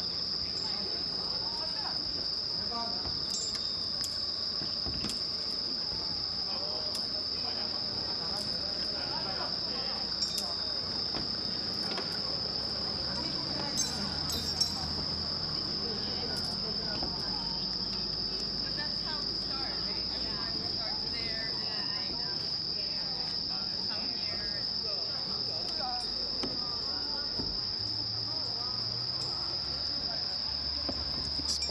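Steady, high-pitched chorus of night insects, unbroken throughout, with a few faint clicks around the middle.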